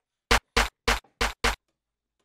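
Snare drum sample in the Sample One XT sampler, triggered five times in quick succession, about three hits a second, each hit short and sharp: a snare being auditioned for a drum pattern.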